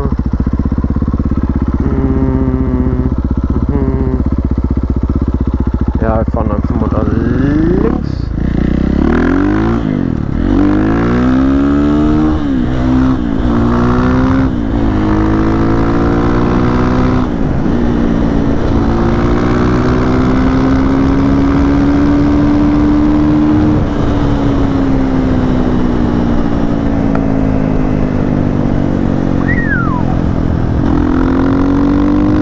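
Husqvarna FE 501 single-cylinder four-stroke engine through an FMF full exhaust, running steadily at first. About six seconds in it pulls away, revving up through several gear changes, then holds a steady cruise that slowly rises and eases off near the end.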